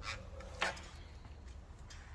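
Quiet workshop room tone with a steady low hum and a few faint rustles of a braided wiring harness being handled on a bench.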